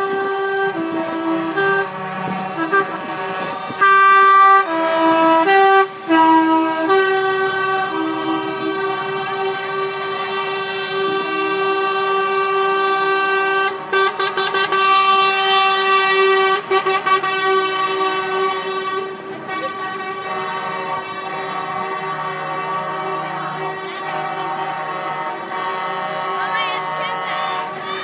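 Truck air horns sounding almost without a break as a convoy of lorries rolls past, several horns at once. In the first several seconds the horns step between different notes; after that they are held in long, steady blasts. There is a short burst of hissing noise about fourteen seconds in.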